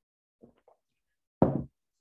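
Near silence with a couple of faint clicks, then one short knock about one and a half seconds in.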